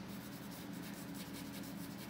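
Small paintbrush rubbing charcoal across drawing paper in quick, soft, continuous strokes.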